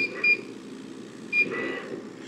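Three short, high electronic beeps from the control panel of a Monport Reno 45 Pro CO2 laser engraver, over the machine's steady fan and air-assist hum, as the laser head is sent back to its home position.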